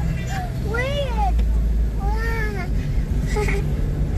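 Low steady rumble of a car driving slowly, heard from inside the cabin. Over it come two drawn-out calls about a second apart, each rising and then falling in pitch, and a shorter one near the end.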